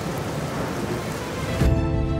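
Heavy rain pouring down, a steady hiss, with soft background music underneath. About one and a half seconds in, the rain cuts off suddenly and the music comes back in with a deep low thud.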